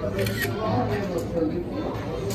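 Indistinct low voices and background chatter in a shop, with a brief click or two near the start.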